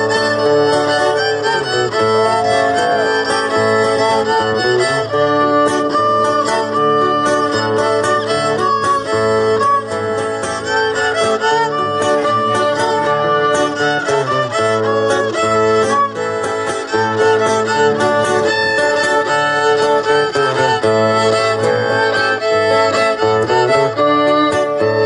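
Violin and guitar playing a dance tune without a break, the fiddle carrying the melody over plucked guitar accompaniment.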